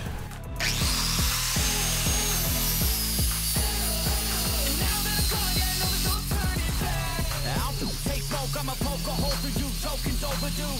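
A small electric angle grinder whining as it grinds the face of a wood slice smooth. It starts about half a second in, and its pitch shifts to a steadier tone about six seconds in. Background music plays underneath.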